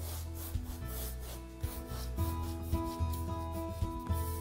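Paintbrush rubbing acrylic paint across a stretched canvas in repeated short strokes, over soft background music with sustained notes.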